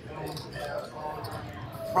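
Quiet, indistinct voices with the soft background noise of a casino table.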